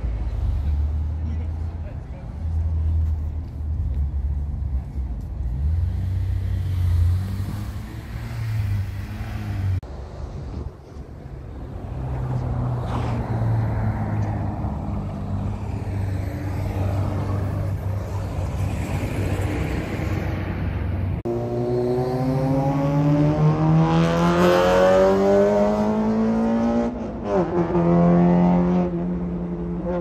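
Car engines idling with a low, steady note. About two-thirds of the way in, one car accelerates in a long pull that rises in pitch for about six seconds and grows louder. The pitch then drops sharply and the engine holds a steady note.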